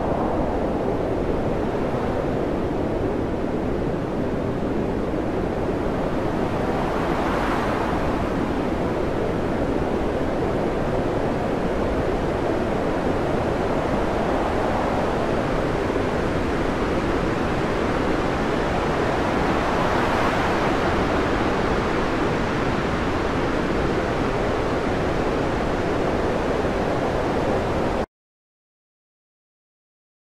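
Steady rushing noise of wind and breaking waves on a stormy sea, swelling briefly about seven seconds in and again around twenty seconds.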